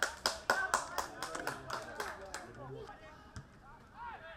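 Hand clapping in a steady, even rhythm, about four claps a second, that stops about two and a half seconds in, with voices calling out around it.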